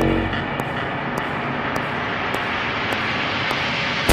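Electronic dance-track build-up: a steady jet-like rushing noise that swells slowly, over a soft high tick about every 0.6 seconds.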